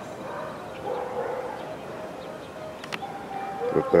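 Faint, short animal calls repeated several times, with a sharp click about three seconds in.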